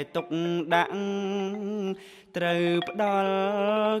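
A man chanting a Khmer poem in a slow, melodic recitation: long held notes that bend and waver, with a brief breath pause about two seconds in.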